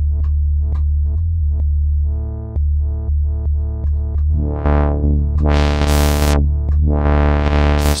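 Reaktor Blocks software modular synth patch playing a heavy sustained bass tone under short sequenced notes at about four a second. In the second half a brighter tone swells up and falls back three times as the filter opens and closes.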